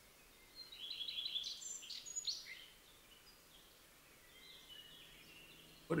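Birds chirping: a burst of short, high chirps and calls about half a second in, then fainter chirps near the end, quiet ambience from the music video's intro playing back.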